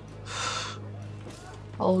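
A short, sharp gasp, an intake of breath lasting about half a second, over a low steady hum. A spoken "Oh" begins right at the end.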